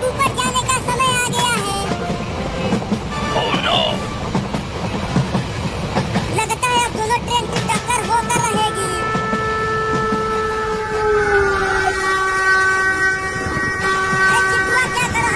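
Train running on rails with a low rumble and clatter, then a long multi-note train horn sounding from about eight seconds in. The horn's pitch dips slightly about three seconds later.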